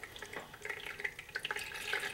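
Melted clarified butter poured from a metal ladle through layers of cloth into a plastic measuring jug: a faint, irregular trickling and dripping.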